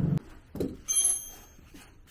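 A car engine running is cut off abruptly a fraction of a second in. Then comes a knock and a metallic clink with a short high ring, from tools and metal parts being handled at a car's under-seat battery box.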